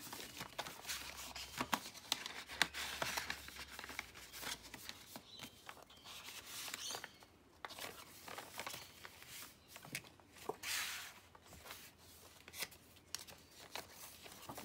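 Paper and cardstock pages of a handmade junk journal being handled and turned: rustling, with soft taps and clicks, and a few louder rustling sweeps as pages are turned.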